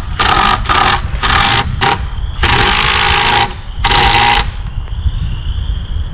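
Cordless Milwaukee impact driver driving a screw into a hard hedge post in six short runs of rapid hammering with a whine, the last two longest, stopping about four and a half seconds in. Wind rumbles on the microphone throughout.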